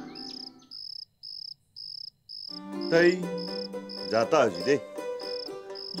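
Crickets chirping at night, short high chirps repeating evenly about twice a second. From about halfway through, a person's voice and held background-music notes come in over them and are the loudest part.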